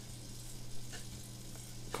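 Steady background hiss with a low electrical hum from the recording setup, and a couple of faint clicks about a second in.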